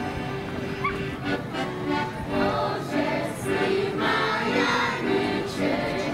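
Live folk dance music on an accordion, with a group of voices singing the tune along with it.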